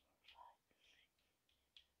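Near silence: room tone, with a brief faint soft sound about half a second in.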